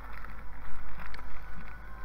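Clear plastic parts bag rustling and crinkling as it is picked up and handled, with the irregular rubbing noise of the hand-held recording moving about.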